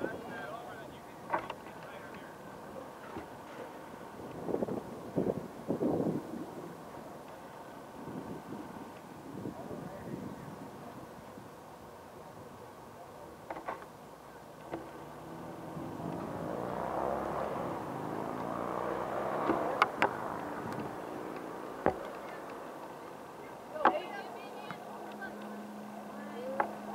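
Open-air soccer-field ambience: scattered distant voices and shouts, with several sharp thuds of a soccer ball being kicked. In the second half a swell of noise rises and fades, like a vehicle going by.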